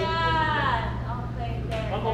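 A person's voice: one long drawn-out wordless call that slides down in pitch over most of the first second, with a shorter vocal sound near the end. A steady low hum runs underneath.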